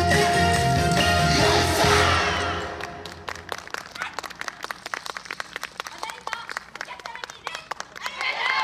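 Recorded yosakoi dance music playing loudly, ending and fading out about two and a half seconds in. Scattered audience applause follows, clapping lightly to the end.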